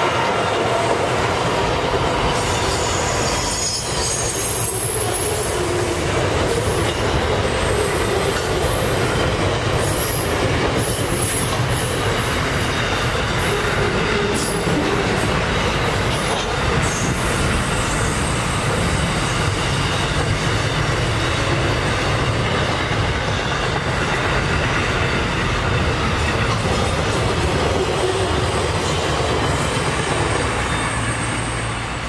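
A long freight train of boxcars and container wagons rolling steadily past close by, its wheels running over the rails. High-pitched steel wheel squeal comes and goes through the first half.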